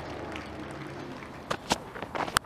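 Quiet open-air cricket-ground ambience with a thin crowd murmur, then two short sharp knocks in quick succession near the end.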